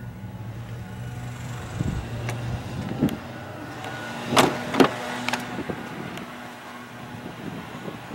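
A few sharp clicks and knocks from a pickup's rear crew-cab door being handled and opened, the loudest pair about four and a half seconds in, over a low steady hum.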